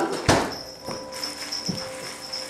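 A knock, then soft ticks of dry alphabet pasta poured from a cardboard box into a hand, with a faint steady high whine.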